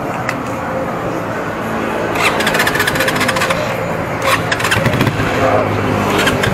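Keeway Cafe Racer 152's single-cylinder four-stroke engine running through an aftermarket bullet-style bottle exhaust pipe, the throttle blipped a few times with clusters of sharp pops from the exhaust. The owner judges from it that the bike needs tuning.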